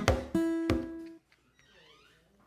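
Acoustic guitar struck twice more at the end of a strummed passage, with a single note ringing out briefly before it is damped and cut off about a second in.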